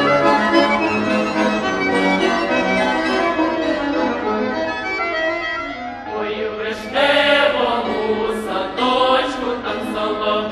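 Ukrainian traditional folk song opening with a sustained accordion introduction. Singing comes in about seven seconds in over the accompaniment.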